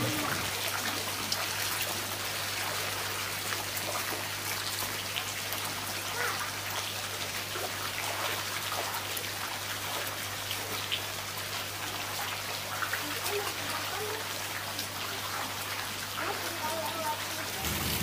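A crowded mass of lele catfish thrashing in shallow water, making a steady, irregular patter of small splashes and slaps.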